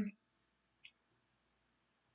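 Near silence with one short, faint click about a second in, just after the end of a spoken word.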